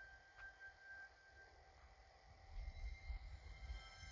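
Studio-logo music heard faintly through a TV speaker: a lingering chime tone fades away, then a low rumble swells from about two and a half seconds in.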